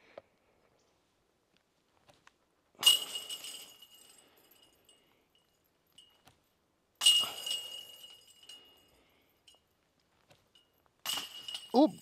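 Putted discs striking the metal chains of a disc golf basket three times, about four seconds apart: each hit is a sharp clank followed by a jangling, ringing rattle of the chains that fades over a second or so.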